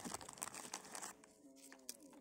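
Plastic crinkling and rustling as a packet is handled, ending about a second in, followed by a short steady hum-like voice sound.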